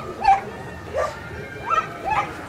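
A dog giving short, high-pitched barks, about one every three-quarters of a second.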